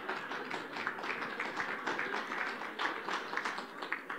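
A seated audience clapping lightly and scatteredly, a dense patter of small claps.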